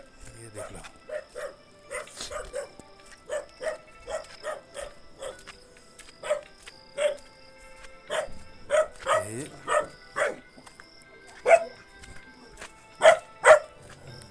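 A dog barking over and over, a short bark every half second or so, with the loudest barks near the end.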